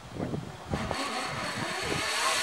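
Zip line trolley running along its steel cable: a hiss with a steady high whine that starts under a second in and grows louder as it picks up speed.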